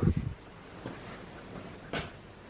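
A wooden room door being pushed open, heard faintly over quiet room tone, with a couple of soft knocks.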